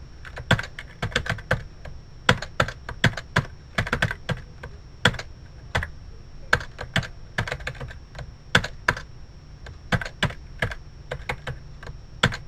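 Computer keyboard being typed on in irregular bursts of keystrokes with short pauses between them, as code is entered.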